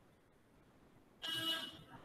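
A brief buzzy electronic tone, like a buzzer or beep, starting suddenly about a second in and lasting about half a second before fading to a fainter tail.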